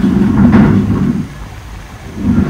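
Motorcycle engine and wind rush while riding along, louder for the first second and then easing off.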